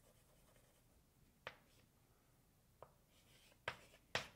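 Chalk writing on a blackboard, faint: three short sharp taps of the chalk, about a second and a half in, near three seconds and just before the end, with a brief scratch before the last.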